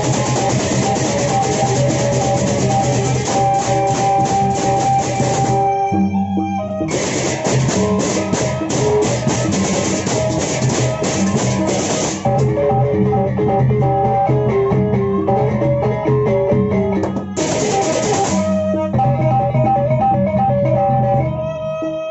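Lombok gendang beleq gamelan playing: large double-headed barrel drums and a row of small kettle gongs carrying a repeating melody, under loud, dense clashing cymbals. The cymbals stop briefly near the sixth second, drop out again from about twelve to seventeen seconds, burst back for a second or so, then fall away, leaving the gong melody and drums.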